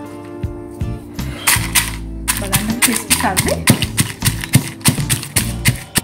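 Stone pestle pounding roasted dried red chillies in a granite mortar: a quick run of sharp knocks, about four a second, starting a second and a half in.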